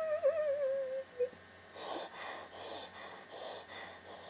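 A woman's drawn-out, wavering wail, falling slightly in pitch, ends about a second in. Nearly a second later come short breathy bursts, about three a second.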